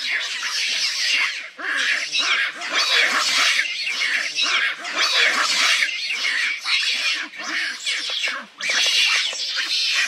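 Macaques screaming and squealing over one another in a squabble, a dense run of high-pitched calls with only brief pauses.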